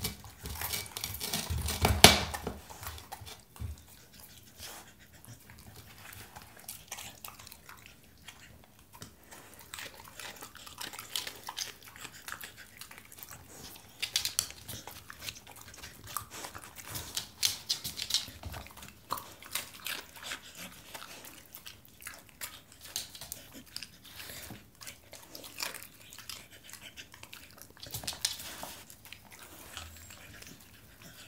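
Spanish water dog eating a raw bell pepper and cucumber sticks: irregular crunching and chewing, loudest about two seconds in.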